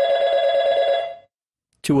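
Telephone ring sound effect: one steady, trilling ring that stops about a second in, signalling the phone alerting the user to an incoming call.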